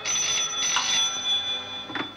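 Desk telephone bell ringing, two rings in quick succession. The ringing stops near the end as the receiver is lifted.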